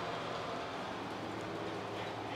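Steady indoor background hum and hiss, even throughout, with no distinct events.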